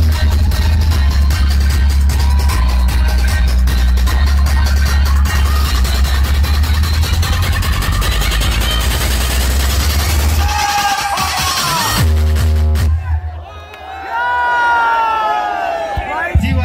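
Dance music played very loud through a DJ sound system's tower of bass cabinets, with heavy deep bass, over a cheering crowd. The bass stops about three seconds before the end, leaving crowd voices.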